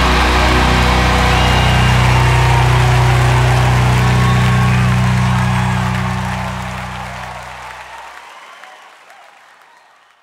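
A live rock band's final chord held and ringing out over an arena crowd's cheering and applause, all fading away in the last few seconds.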